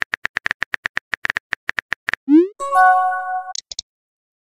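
Phone keyboard typing clicks, about eight a second for two seconds. They are followed by a short rising swoosh and a chat-message chime of a few steady tones as a new text message appears.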